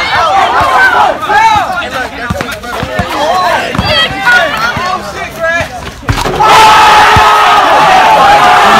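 Many young voices shouting and whooping over one another, with a few sharp thumps underneath. About six seconds in it jumps suddenly to a loud, sustained crowd scream.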